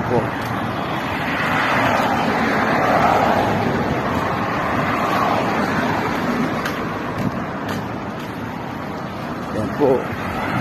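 Road traffic on a wide city street: cars driving past with tyre and engine noise, one passing close and swelling then fading away between about two and five seconds in.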